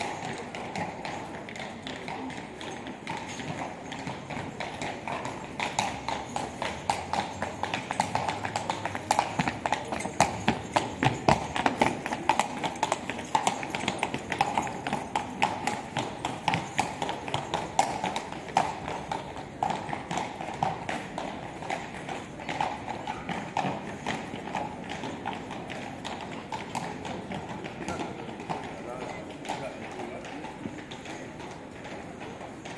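Horse's hooves clip-clopping on cobblestones as a horse-drawn carriage passes, growing louder, loudest near the middle, then fading away.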